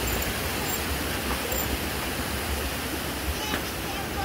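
Steady rushing of a creek's water, with a couple of faint knocks about three and a half seconds in.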